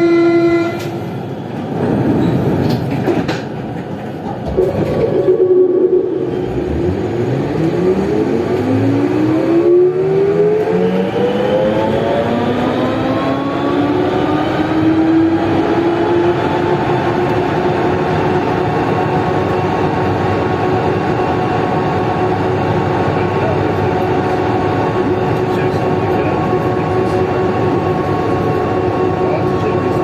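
Siemens VAL 208 NG rubber-tyred automated metro train heard on board, opening with a short steady tone. Its traction motor whine rises in pitch as the train accelerates for about ten seconds, then holds a steady whine over continuous running noise at cruising speed.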